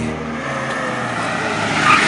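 A car driving, heard mostly as tyre and road noise, swelling near the end.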